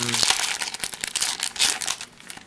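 Foil wrapper of a Pokémon XY Flashfire booster pack crinkling irregularly as it is opened and the cards are pulled out of it.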